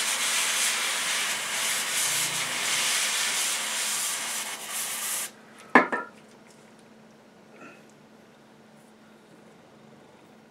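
Aerosol can of cryosurgery spray hissing steadily for about five seconds as the cryogen is sprayed onto the tips of a tweezer-style applicator to chill them for freezing a skin tag. The hiss cuts off suddenly and a single sharp click follows.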